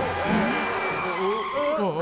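Cartoon characters crying out "ah" in alarm, several short rising and falling cries and a longer swooping one near the end, over cartoon car sound effects and background scoring.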